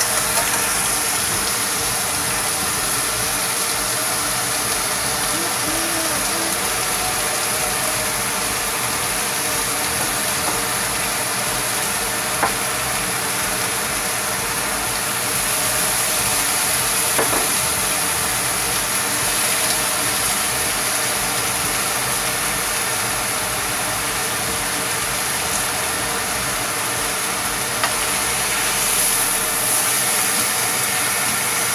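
Meat slices and onions sizzling steadily in a nonstick wok, with a few light clicks of a spatula against the pan.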